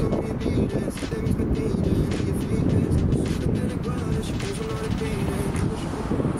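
A song with singing and a beat, over a steady low rumble.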